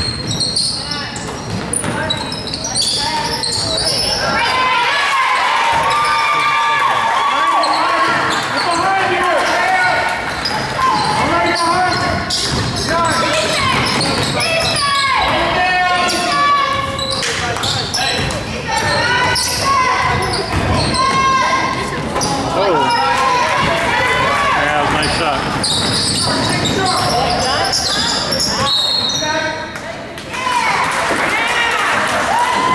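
Youth basketball game in a gymnasium: a basketball bouncing on the hardwood court, with the shouts and chatter of players and spectators echoing around the hall.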